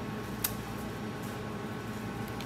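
Steady low room hum, with a single sharp click about half a second in.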